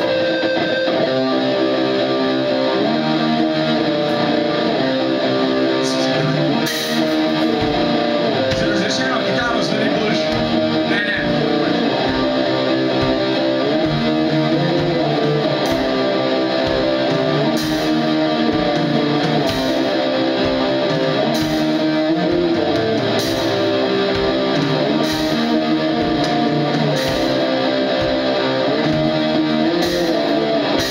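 Live black metal played by an electric guitar and a drum kit: the guitar plays a slow riff of held, ringing chords that change every second or two, while drum and cymbal hits come in about six seconds in and then land roughly once a second.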